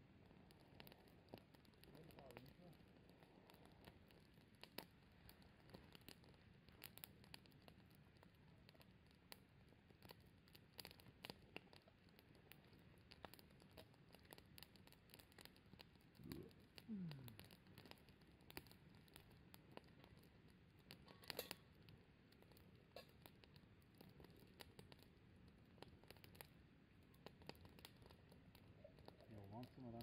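Faint wood campfire crackling, with scattered small snaps and pops from the burning sticks.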